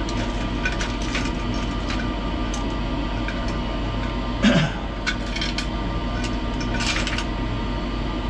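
Circuit boards clattering out of a glass jug into a plastic strainer over a bucket, in irregular clicks and knocks with a louder clunk about halfway and another near the end, over a steady low hum.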